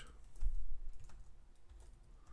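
Typing on a computer keyboard: a quick run of keystrokes, loudest in the first second and fainter after.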